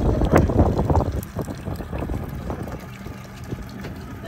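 Wind buffeting the microphone, loudest through the first second, then easing to a softer rush.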